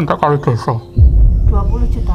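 A man speaking, then about a second in a loud, deep low boom that lingers under background music.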